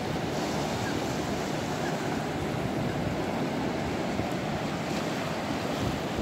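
Ocean surf breaking and washing up on a sandy beach: a steady rush of waves, with wind rumbling on the microphone.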